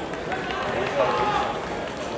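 Several voices talking and calling out over an open-air football pitch, overlapping one another.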